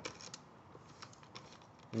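Faint, scattered small clicks of a nut driver turning a bolt into a plastic recoil starter housing.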